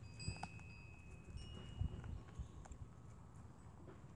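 A young deer eating feed off the top of a tree stump close by: soft irregular crunching and chewing knocks, the loudest a little under two seconds in.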